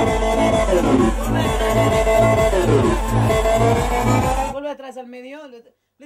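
Electronic dance track played loud through studio monitor speakers, with a steady pounding bass-drum beat under a melodic line, cut off suddenly about four and a half seconds in. A man's voice follows for about a second.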